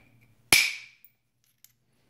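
A single sharp strike of a copper bopper (copper-headed knapping hammer) on a Flint Ridge flint preform about half a second in, with a brief ringing tail; the blow knocks a flake off the edge.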